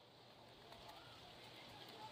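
Near silence: only a faint background hiss.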